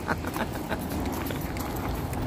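Footsteps crunching on gravel, a few irregular steps, over a low steady rumble.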